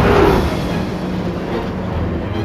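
Film sound of a heavy vehicle's engine running hard at full throttle as it speeds along a dirt track. A loud rushing whoosh opens and fades within half a second over a steady low rumble.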